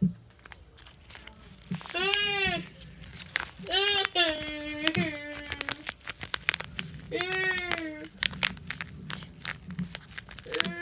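Paper crinkling and crunching in many small crackles as a homemade paper squishy, drawn on in marker, is squeezed and handled. A young girl's wordless high voice sounds three times over it.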